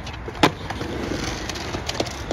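Skateboard landing a flip trick on concrete with one loud clack about half a second in, then urethane wheels rolling over concrete with a couple of lighter clicks near the end.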